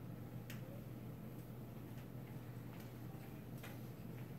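Steady low room hum with a few faint, irregularly spaced clicks.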